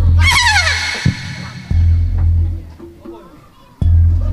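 Live jaranan gamelan music. A high, wavering melodic line slides down in pitch in the first second, over deep beats that come about every two seconds.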